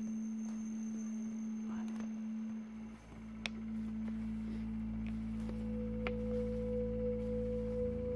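Background music of held, droning tones: one low steady tone, a deeper hum joining about three seconds in, and a higher held note added about five and a half seconds in, with a few faint clicks over it.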